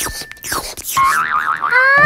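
Cartoon sound effect: a sharp crack followed by a quick falling sweep and a wobbling, boing-like warble, the comic cue for a sudden toothache as the cat bites into a lollipop.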